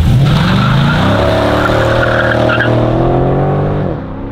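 The 6.4-litre 392 HEMI V8 of a 2012 Dodge Charger SRT8 Super Bee accelerating hard, with the tyres squealing. It starts suddenly, and the engine note climbs over about the first second, then holds and rises slowly before dropping away near the end.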